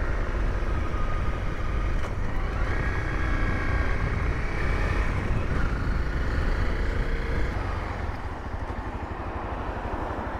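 Honda CRF250L single-cylinder engine running as the motorcycle rides along, with wind rumble on the microphone. The sound eases a little near the end as the bike slows.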